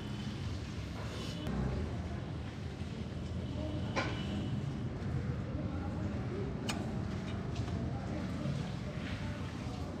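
Steady low background rumble with two sharp metallic clicks, about four seconds in and again a little under seven seconds in, as a small drum-brake spring and the brake-shoe hardware are handled and fitted.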